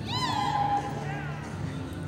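A horse whinnying: a high call that rises and then falls in pitch over about the first second, followed by a shorter second call.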